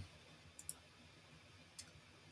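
Near silence broken by three faint computer-mouse clicks: two close together about half a second in, and one near the end.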